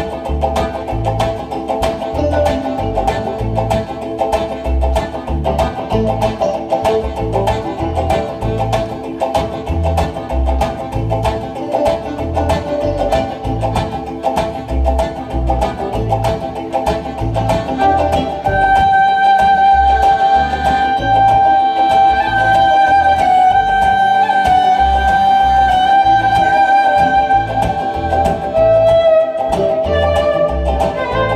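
Live string-band music: banjo and other plucked strings over a steady drum beat, with the fiddle taking the lead in long bowed notes from about 18 seconds in.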